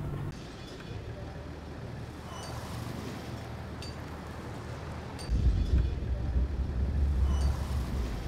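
Road traffic ambience, with cars and motorbikes running along a street. About five seconds in, a louder low rumble sets in.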